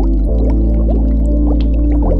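Low-pass-filtered background music, muffled to mimic hearing underwater, with an added bubbling sound effect laid over it as a steady stream of short rising bubble blips.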